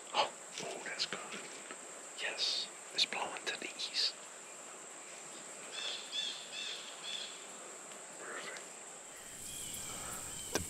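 Blue jays calling, with a short run of about five repeated calls midway, over a steady high-pitched insect drone. Rustling of camouflage clothing and gear near the start.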